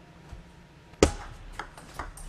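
Table tennis serve: a single sharp click of the celluloid ball off the racket about a second in, followed by fainter clicks of the ball bouncing on the table as the rally begins.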